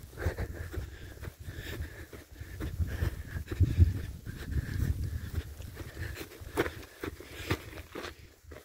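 Footsteps of a hiker walking uphill over grass and rock, irregular crunches and knocks, over a low rumble of wind on the microphone.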